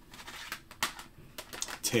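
Plastic CD jewel cases clacking and sliding against one another as they are sorted through by hand: a brief rustle near the start, then a string of sharp clicks.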